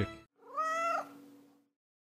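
A domestic cat meows once, a single call of about half a second, starting about half a second in.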